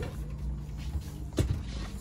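A single short knock about one and a half seconds in, over a low steady rumble: a tent-trailer bed support pole being popped out of its socket and set down.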